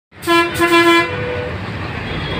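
A vehicle horn honks twice in quick succession, two short blasts in the first second, over steady street traffic noise.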